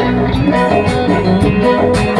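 A live band playing an instrumental passage between sung lines: plucked-string melody over a steady bass line, with drum strokes keeping a regular beat.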